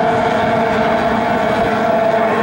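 Outboard racing engines of J-class hydroplanes running flat out, giving a steady, high-pitched whine.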